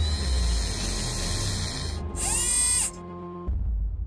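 Mechanical sound effects for a spacecraft's solar panels unfolding, over background music: a steady whirring, then about two seconds in a short whine that slides down in pitch and levels off, cut off just before three seconds. A low rumble comes back near the end.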